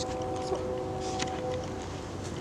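A steady distant motor hum over wind noise on the microphone, the hum fading out near the end, with a few light footsteps on dry ground.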